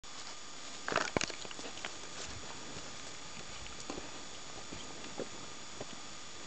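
Footsteps crunching on a gravel-covered stone footbridge, a loud cluster of steps about a second in, then scattered lighter steps, over a steady hiss.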